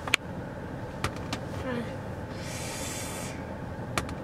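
A small wooden fidget flip-stick being tapped and flipped on a car's padded armrest: one sharp click just after the start and two softer ticks about a second in, over a steady car-cabin hum. A hiss lasting about a second comes in the middle.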